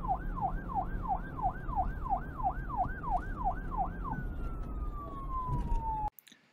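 Emergency-vehicle siren in a fast yelp, its pitch rising and falling nearly three times a second over a low rumble; a little after four seconds in it changes to a single tone that slides slowly downward.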